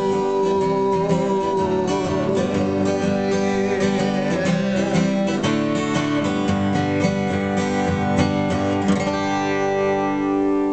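Acoustic guitar strummed in a steady rhythm through a song's instrumental ending, stopping about nine seconds in on a final chord left to ring.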